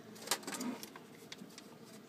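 A few short crackles and clicks of a small folded paper slip being handled and unfolded by hand.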